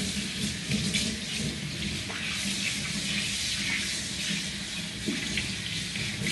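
Water running steadily from a tap into a sink as soapy hands are rinsed under it.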